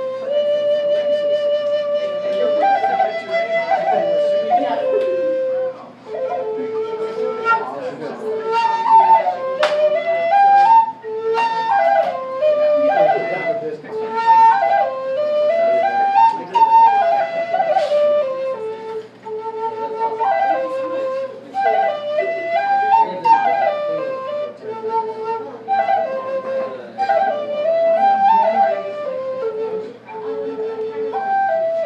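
Native American style flute in the A minor pentatonic scale playing a slow melody, held notes stepping up and down in repeated phrases, with short breath pauses between phrases.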